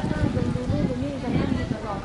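People talking among passersby in a pedestrian street: voices that carry no words the recogniser could make out.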